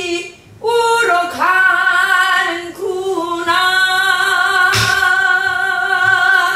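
A woman sings a Korean new folk song (sinminyo) in long held notes with a wavering vibrato. She accompanies herself on a buk barrel drum, struck once with a wooden stick about five seconds in.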